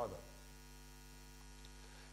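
Faint, steady electrical mains hum, a low even buzz, heard in a pause in speech; the last spoken word trails off right at the start.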